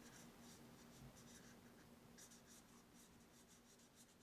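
Faint scratching of a washable felt-tip marker drawn across sketchbook paper in short strokes, dying away near the end.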